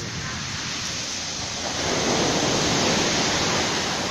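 Surf on a rough sea breaking and washing up a pebble beach: a steady rush of water that swells into a louder wave about two seconds in and lasts nearly two seconds.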